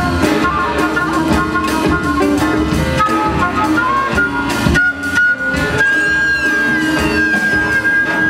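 Live jazz big band playing: drum kit, guitar and horns under a transverse flute solo. About five seconds in the band briefly breaks, then one long high note is held.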